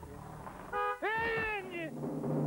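Two meow-like animal cries: a short one, then a longer one that rises quickly in pitch, holds and slowly falls away.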